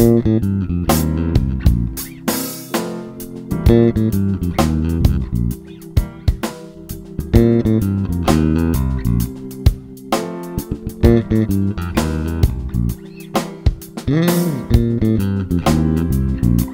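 Fender Jazz Bass electric bass playing a groove over a C7 chord, built from the chord's arpeggio notes rather than hammering the root, along with a drum play-along track.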